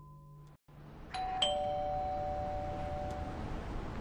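Doorbell chime giving a two-note ding-dong, a higher note followed by a lower one, both ringing on together for about two seconds before cutting off. A music tail fades out and cuts off just before it.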